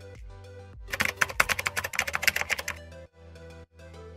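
A quick run of keyboard-typing clicks, about two seconds long, starting about a second in, over soft background music.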